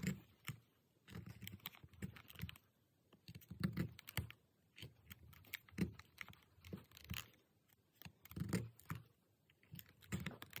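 Hand awl and needle working through the edge of a thick leather sheath during hand-stitching: faint, irregular short scratchy rasps and clicks, about one cluster a second with short gaps between.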